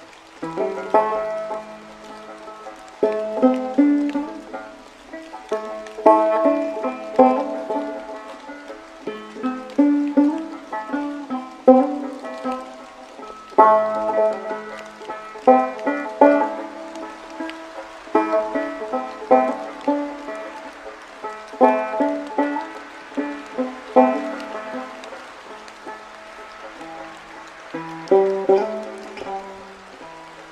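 A five-string banjo played slowly in old-time style, single plucked notes ringing out one after another in unhurried phrases. A faint rain hiss lies underneath.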